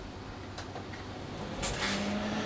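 Quiet movement with a click about halfway in, then a short rustle and a small louvred electric fan switching on near the end, starting a steady hum.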